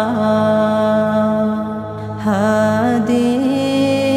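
Male voice singing an Islamic naat: one long held note, then a wavering, ornamented phrase beginning about two seconds in, over a steady low drone.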